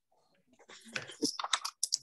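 Computer keyboard being typed on: an irregular run of quick key clicks starting about half a second in.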